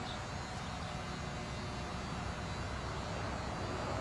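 Steady low rumble and hiss of background noise, with no distinct event.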